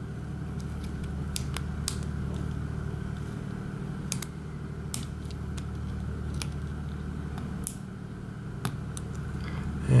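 Light metal clicks and ticks from a flag pick probing the pins of an IFAM Uno 80 dimple shutter lock: about ten separate ticks, scattered and irregular, over a steady low hum.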